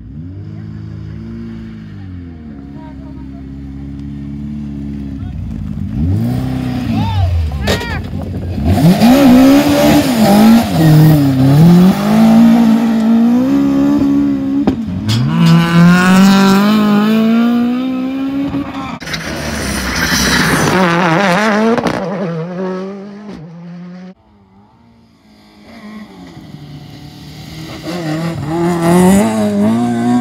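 Rally car engines at full stage pace. One car's revs climb and drop again and again through gear changes as it comes up and passes, loudest in the middle, then die away about 24 seconds in. A second car, a Ford Escort Mk2 rally car, is heard approaching near the end.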